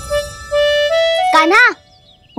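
Background score: a held melody line stepping upward note by note. Near the end comes a child's short exclamation that rises and falls in pitch.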